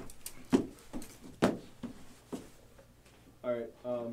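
Three sharp knocks about a second apart, with lighter clicks between, then a man's wordless vocal sound near the end.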